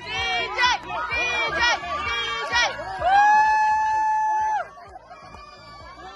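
A group of people shouting and cheering on a runner, short yells coming in quick succession, then one long held shout about three seconds in that stops a second and a half later.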